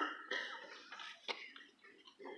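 A person clearing their throat with a few short coughs, with a single sharp click about a second and a half in.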